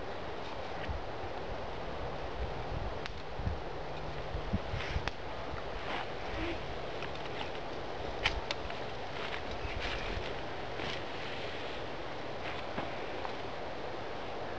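Wooden sticks clicking and knocking against each other, with cord rustling, as bank line is wrapped around each stick to lash a stick table top to its frame. The knocks come irregularly, mostly in the middle of the stretch, the sharpest a little past halfway, over a steady outdoor background noise.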